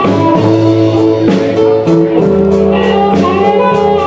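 Live blues band playing an instrumental passage: electric guitar lead over bass and drums, with a bent guitar note about three seconds in.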